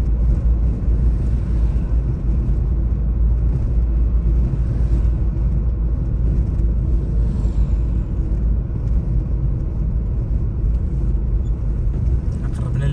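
Steady low rumble of a car driving at road speed, its engine and tyres on smooth new asphalt heard from the moving car, with no distinct events.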